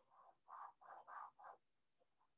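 Felt-tip marker drawing a straight line on paper: about five short, faint strokes in the first second and a half.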